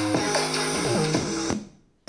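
Electronic dance track played through an LG PH2 portable Bluetooth speaker at about 80% volume, with gliding synth notes. About a second and a half in, the music cuts out briefly as the speaker's bass boost is being switched on.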